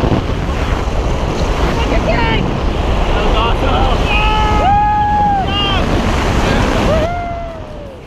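Freefall wind rushing over the camera microphone in a tandem skydive, loud and steady, with a few long, held pitched cries over it; the rush thins and dips near the end.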